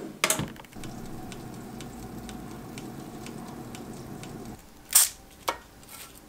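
Countertop toaster oven: a clunk, then the oven running with a steady hum while its timer ticks about twice a second. Two sharp clicks follow near the end.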